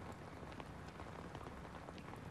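Light rain falling, a faint steady hiss.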